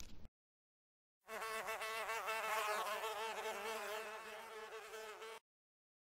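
A buzzing insect sound effect, its pitch wavering slightly up and down, starting about a second in and cutting off near the end.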